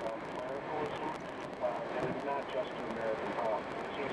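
A talk-radio voice from the car's radio, the words indistinct, over steady road noise in the moving car's cabin.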